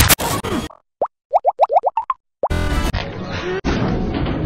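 Choppy collage of short cartoon-soundtrack fragments spliced end to end: a loud noisy burst, a gap, then a quick run of about six short rising bloops, then a dense stretch of music and effects after a second gap.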